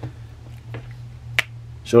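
A single sharp plastic click about one and a half seconds in, with a fainter tick before it, as the jointed arm and shoulder of a 6-inch action figure are moved by hand. A steady low hum runs underneath.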